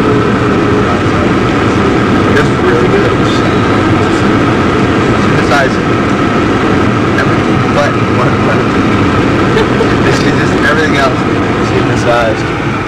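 Steady road and engine noise inside a moving car's cabin, with faint snatches of voices now and then.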